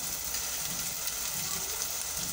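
Chopped onions and ginger-garlic paste frying in oil in a pan, a steady sizzle.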